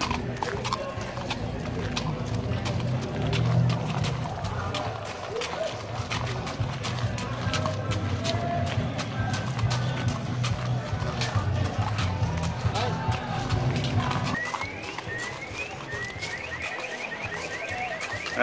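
A pony walking under a young rider, its hooves clopping and crunching on gravel, over a low background hum that stops about three-quarters of the way through.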